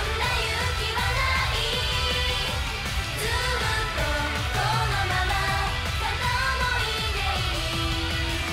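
Female J-pop idol group singing live into handheld microphones over a pop backing track with a steady beat.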